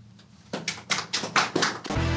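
A quick, uneven run of about ten sharp taps, ending near the end in a deep boom that opens a logo sting.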